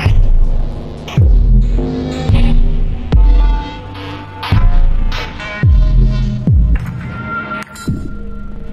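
Experimental electronic music: loud, throbbing sub-bass notes with a string of deep booms that drop sharply in pitch, under distorted held tones.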